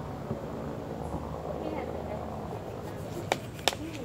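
Kitchen knife cutting limes on a wooden cutting board: three sharp knocks of the blade against the board in the last second.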